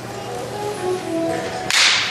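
Soft musical notes, then near the end a sudden loud, bright jingling crash of shaken sleigh bells that rings on and fades as a Christmas song's accompaniment begins.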